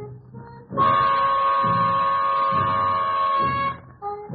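1944 swing big band recording, instrumental with no vocal. About a second in, the brass holds one loud high note for about three seconds over the pulsing rhythm section, then breaks off. The sound is narrow and dull, as on an old record.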